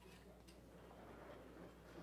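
Near silence: quiet room tone with a steady low hum and a few faint taps.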